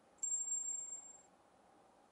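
A single very high-pitched ring or ding that starts abruptly about a fifth of a second in, holds for about a second and fades out.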